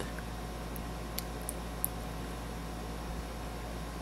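Steady low background hum and hiss, with a few faint, brief ticks in the first two seconds.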